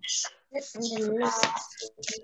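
An indistinct voice heard over a video call: a short hiss at the start, then about a second of unclear spoken sounds.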